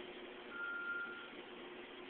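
A single steady electronic beep, a little under a second long, starting about half a second in, over a low steady hum.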